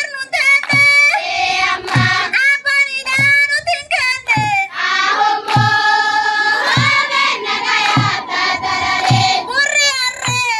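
A group of students singing a traditional song together, with some notes held near the middle, over a low beat that comes about once every second.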